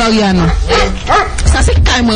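Loud voice sounds that the transcript does not catch as words, with pitch sliding up and down, over a steady low hum.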